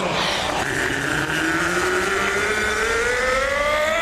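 Ring announcer's long drawn-out call, held for over three seconds with its pitch slowly rising, over crowd noise in the arena.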